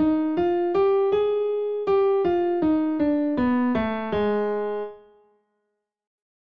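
Piano playing the Suvarnāngi raga scale on A-flat, one note at a time. It reaches the upper A-flat and holds it, then steps back down in evenly spaced notes to the lower A-flat. That last note rings on and fades out near the end.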